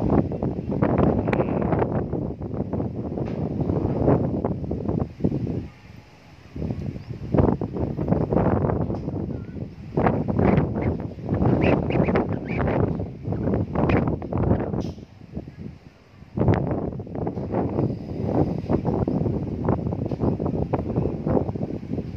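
Gusty wind noise on the microphone, a rough low rumble that swells and drops, with brief lulls about six and sixteen seconds in.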